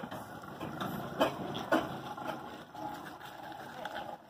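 Steam traction engine pulling away, its exhaust giving sharp chuffs about half a second apart over a steady rumble of the engine and its iron-shod wheels on the road; the chuffs grow fainter as it moves off.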